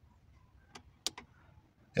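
Three short, quiet clicks from a small selector switch under the dashboard being worked by hand: one just under a second in, then two close together. The switch changes which temperature sensor the gauge reads.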